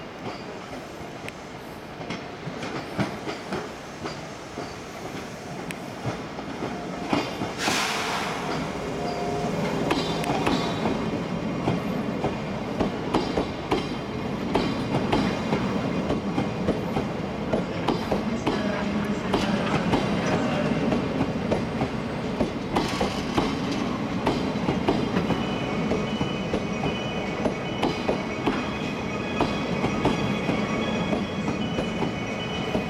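Old-type JR East passenger coaches rolling slowly past at close range, their wheels clicking over rail joints, growing louder as the cars come by. A thin, high wheel or brake squeal comes in near the end as the train slows to a stop.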